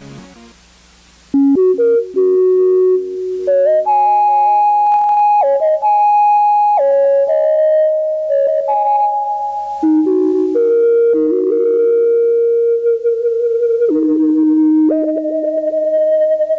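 Roland JP-8080 synthesizer playing a slow single-line melody of held notes in a pure, sine-like lead tone on its 'Sine Lead' patch, starting about a second and a half in. The pitch steps up and down from note to note, and the last note wavers with vibrato near the end.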